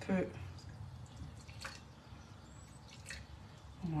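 Soaking syrup poured from a small saucepan into a plate: faint drips of liquid, two soft ticks about a second and a half apart.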